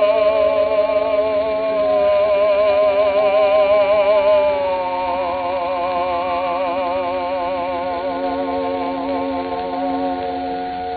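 Operatic tenor singing long held notes with wide vibrato over steady accompaniment, stepping down to a lower held note about five seconds in. It is an early acoustic recording from 1904, narrow in range with surface hiss.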